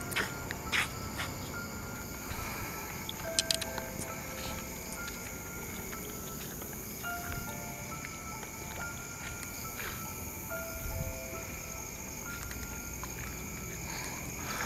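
Steady chirring of night insects such as crickets, with a sparse, slow melody of single held notes over it. A few sharp clicks come in the first few seconds.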